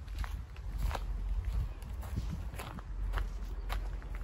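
Footsteps on dry, weedy dirt ground, about two steps a second, over a steady low rumble.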